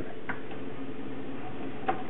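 Realistic CD-1600 CD player's disc tray mechanism clicking as it runs on power-up, driven by a rubber band standing in for its drive belt, with a short click about a third of a second in and another near the end, over a low steady hum. The tray being drawn in is the sign that the makeshift belt holds enough tension, and it is definitely a lot better than it was.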